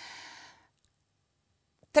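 A woman's audible breath, a soft sigh-like exhale lasting about half a second at the start, followed by silence.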